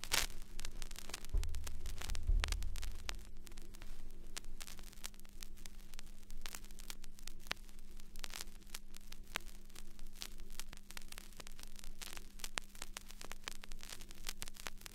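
Vinyl record surface noise under the stylus in a silent stretch of groove between tracks: dense crackle and clicks over a steady low hum, with a brief low rumble a couple of seconds in.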